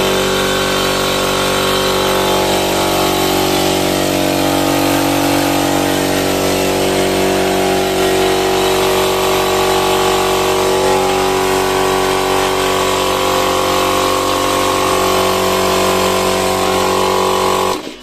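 AG 2 HP piston air compressor with a 24-litre tank running, its motor and pump giving a loud, steady hum. It cuts off abruptly near the end.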